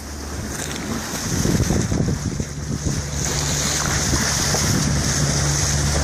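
Water rushing along the bow of a moving catamaran, with wind on the microphone and a steady low hum underneath. The rushing grows louder about three seconds in.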